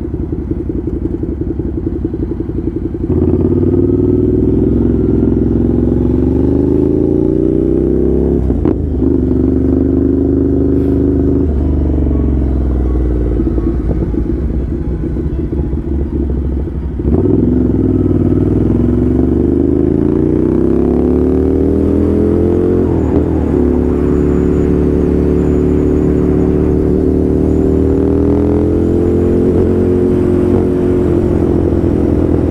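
Ducati Scrambler's L-twin engine heard from the rider's seat. It opens up about three seconds in and eases off for a few seconds midway. Around seventeen seconds it pulls again, its pitch rising, then settles to a steady cruise.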